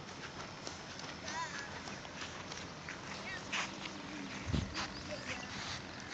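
Footsteps through grass with faint voices and outdoor background noise, and a low thump about four and a half seconds in.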